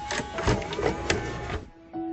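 Clicking and whirring of a VCR's cassette mechanism as a VHS tape is handled and pushed into the slot, over quiet background music. The mechanical clatter runs for about a second in the middle and stops abruptly.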